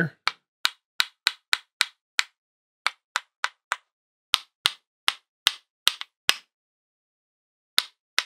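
A paint-loaded round watercolour brush tapped against the handle of a second brush held over the paper, flicking spatter onto wet paint. Nearly twenty sharp taps come in quick bursts, with a longer pause before a last tap near the end.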